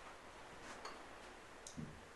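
A few faint, irregular clicks and a soft low knock near the end, from communion vessels being handled on a wooden altar in a quiet small room.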